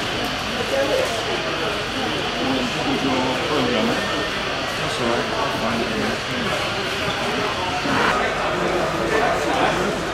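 Crowd chatter: many people talking at once, a steady hubbub of indistinct voices in a busy hall.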